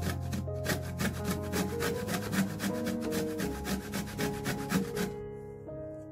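A lemon rubbed against the blades of a metal box grater, its peel being zested, in quick back-and-forth rasping strokes, several a second. The strokes stop about five seconds in, leaving soft background music.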